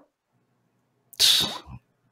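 About a second of near silence, then a single short, sharp breathy burst from a person.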